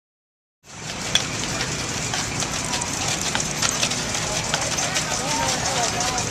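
A team of draft horses drawing a wagon over gravel: a steady crunching with many scattered clicks from hooves and wheels, with people talking in the background. It starts suddenly about half a second in.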